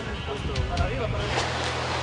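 Faint talking of people at the foot of the rock face over a steady low hum and a noisy rush that grows in the second half.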